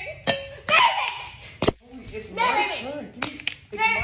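Excited voices of a young man and woman, with a few sharp claps or smacks.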